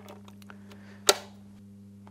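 Maxim PM1910 machine gun's lock being worked by hand in the open receiver: one sharp metallic click about a second in, over a low steady hum.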